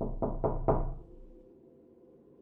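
Quick knocking, four sharp raps about a quarter of a second apart in the first second, then it stops.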